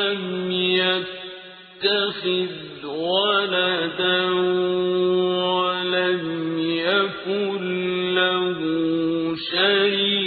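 Quran recitation in Arabic: a single reciter chants in a melodic style, holding long notes with gliding ornaments, and pauses briefly for breath twice.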